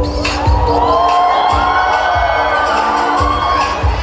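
Dance music with a steady beat, over which an audience cheers and shrieks from about half a second in until near the end.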